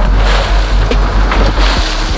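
19-foot Yamaha jet boat running at speed on open sea: a steady low engine drone with wind and rushing water noise over it.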